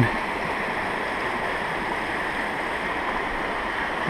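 Shallow river water running over rocks in riffles, a steady rushing with no break.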